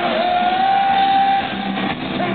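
Live hard rock band playing, with electric guitars, heard from within the crowd in a large hall. One note scoops up just after the start and is held for over a second above the band.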